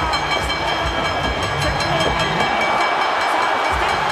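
Loud arena music with a steady beat, heard over crowd noise in a wrestling hall.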